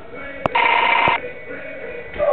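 A loud, steady electronic ringing tone lasting about half a second, starting about half a second in just after a sharp click and cutting off suddenly.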